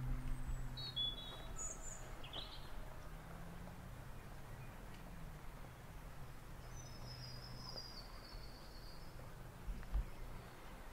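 Outdoor garden ambience with wild birds calling: a few short high chirps in the first three seconds and a longer, falling call about seven seconds in. A low steady hum runs underneath.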